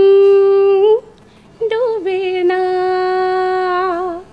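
A woman singing unaccompanied into a microphone in a slow, drawn-out style. She holds one long steady note, pauses briefly about a second in, then holds a second long note that opens with a few quick ornamental turns.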